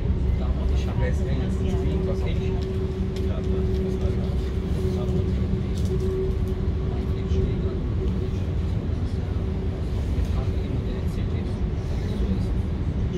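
Regional passenger train running along the track, heard from inside the carriage: a steady low rumble of wheels on rails with a steady drive hum that weakens about two-thirds of the way through.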